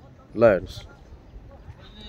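A man's voice saying one short word about half a second in, with low steady background noise around it.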